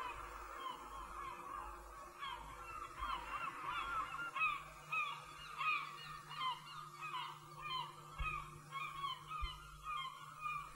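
A flock of birds calling, with many short, arched calls overlapping several times a second.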